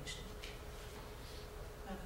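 Room tone in a pause between speakers: a faint, steady background hum with light hiss, and two brief soft hisses in the first half-second.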